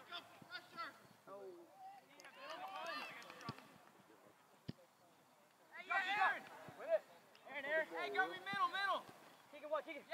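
People shouting and calling out during a soccer match, with a louder run of shouts in the second half. A single sharp knock sounds near the middle.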